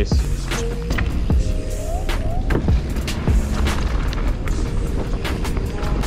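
Background music, with the rumble and rattle of a mountain bike rolling down a dirt trail under it, marked by scattered knocks.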